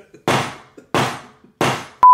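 Wooden gavel banged three times, about two thirds of a second apart, each strike ringing out briefly.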